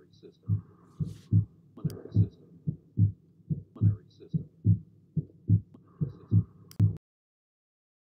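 Recorded heart sounds as heard through a stethoscope: a steady lub-dub of paired low thumps with a hiss between some beats, the murmur of aortic valve stenosis. It stops abruptly about seven seconds in.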